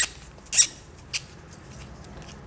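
Natural cork being twisted off the spiral worm of a waiter's friend corkscrew: a few short, high-pitched squeaks of cork turning against the metal.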